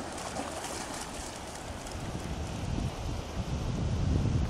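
Surf washing on the beach, with wind buffeting the microphone; the low wind rumble grows stronger in the second half.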